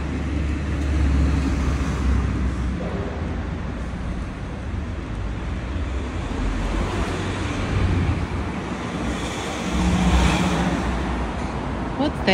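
Steady city street traffic noise with a low rumble, swelling louder about ten seconds in as a vehicle passes.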